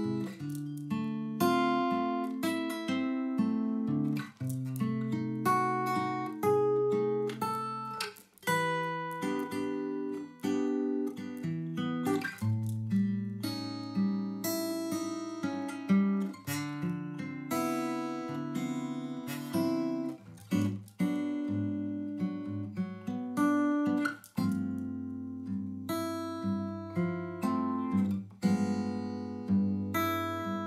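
Instrumental music led by plucked acoustic guitar: quick picked notes, each ringing and fading, over lower held notes.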